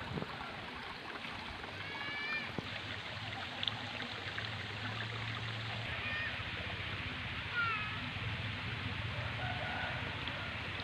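Outdoor ambience: a steady rushing noise, with two short, downward-bending animal calls about two seconds and seven and a half seconds in, and a faint low hum through the middle.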